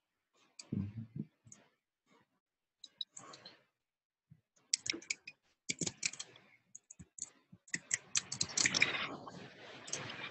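Computer keyboard typing and mouse clicks, sparse and irregular at first, then quicker and denser from about halfway through.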